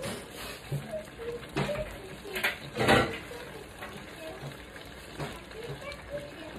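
Pork, liver and vegetable stew (menudo) cooking in a wok, a faint steady sizzle as it comes up to a boil, with a few sharp knocks, the loudest about three seconds in.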